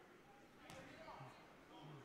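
Near silence: faint gym room tone with distant, indistinct voices and a soft click.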